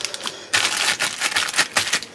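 A plastic zipper storage bag being pressed shut along its seal, a quick run of small clicks and plastic crinkles lasting about a second and a half.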